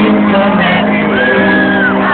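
Loud live concert music in an arena, heard from among the audience, with crowd voices shouting and whooping over it and a long held sung note in the second half.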